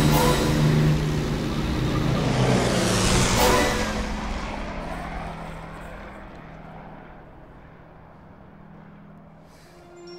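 A de Havilland Tiger Moth biplane's Gipsy Major engine running at full power as the plane goes past, with a rushing swell about three seconds in, then the engine drone fading steadily away into the distance.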